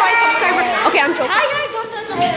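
Children's voices talking and chattering, more than one speaking at once.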